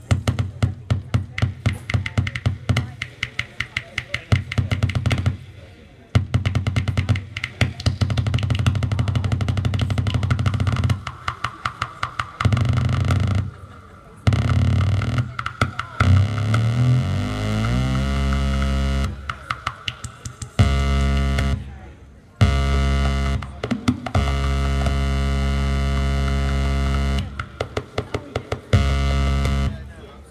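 Homemade noise-circuit electronics played live through a small mixer and effects pedals. It starts as a fast stream of clicking pulses, moves into stepping tones that slide upward, then becomes a dense, buzzing low drone full of overtones that cuts in and out abruptly several times.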